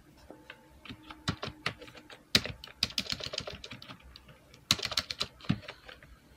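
Typing on a computer keyboard: a few scattered keystrokes, then two quick runs of key clicks, one a little before halfway and one near the end, as a web address is entered.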